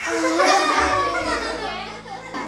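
A classroom of young children reacting together, many voices calling out and laughing at once; it bursts in suddenly, is loudest about half a second in, then dies away.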